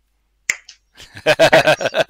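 A single sharp click about half a second in, then men laughing loudly in quick repeated bursts.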